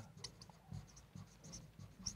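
Faint scratching and light squeaks of a felt-tip marker writing on a whiteboard.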